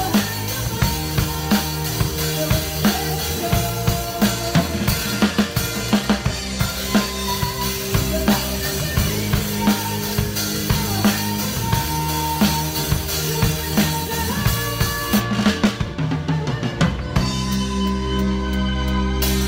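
Drum kit played live in a steady beat, with drum strikes over the band's sustained bass and chords. About three seconds before the end the cymbal wash drops out and the drumming thins while the held chords carry on.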